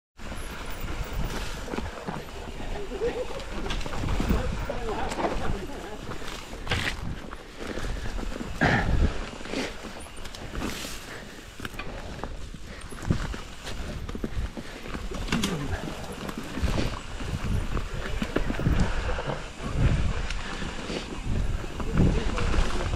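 YT Jeffsy mountain bike riding down a dirt woodland trail: tyres on dirt and leaf litter, with the bike knocking and rattling over bumps.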